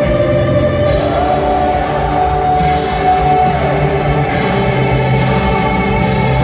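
Live amplified performance of a ballad: a male lead singer holds a long note over a large choir and string orchestra. The held note steps up a little about a second in and falls away around the middle.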